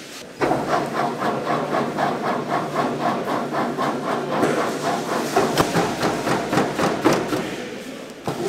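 Automatic meat slicer starting up about half a second in and running, its blade cutting a block of beef in a fast, even rhythm of about six strokes a second. Sharper, louder clacks come in the second half before it stops near the end.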